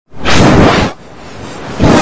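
Loud, heavily distorted whooshing noise: one surge, then a softer hiss that slowly builds, then a second surge near the end, as if the sound repeats in a loop.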